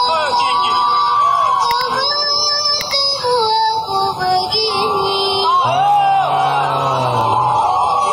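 A boy singing a slow song into a microphone over backing music, his held notes bending in pitch. A deeper voice joins for a couple of seconds past the middle.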